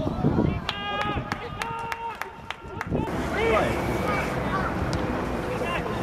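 Players' voices shouting and calling out across an outdoor football pitch, with two short, steady held calls about a second in.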